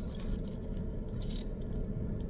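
Steady low hum inside a car cabin, with a brief scrape a little past a second in as a fountain-drink cup is handled.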